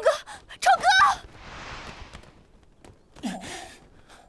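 A woman's high, wavering cry, followed by a breathy gasp, then a short, lower groan that falls in pitch near the end.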